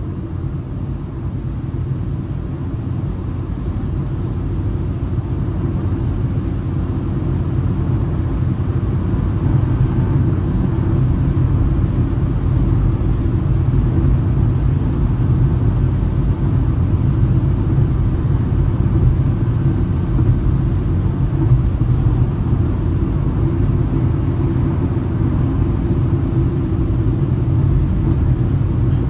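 Inside the cabin of a Citroën C3 1.0 cruising at highway speed, about 120–130 km/h: a steady low rumble of engine, tyres and wind. It grows somewhat louder over the first ten seconds, then holds steady.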